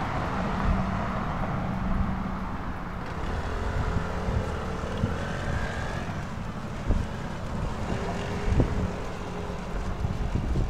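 Road traffic with wind on the microphone: a car passes close by at the start and its noise fades, then the traffic continues more faintly, with a few short knocks in the second half.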